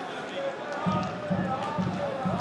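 Football stadium background sound: faint voices, then, from about a second in, a run of low rhythmic thumps, about four a second.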